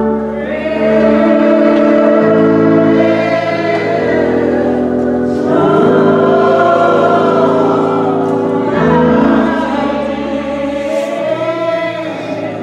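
Slow gospel singing by several voices, with long held notes over sustained low chords that change every few seconds.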